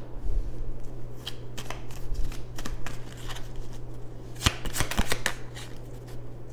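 Tarot cards being shuffled by hand: a run of quick card snaps and flicks, with a louder, denser flurry about four and a half seconds in.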